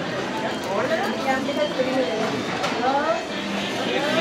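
Indistinct voices talking, speech that cannot be made out.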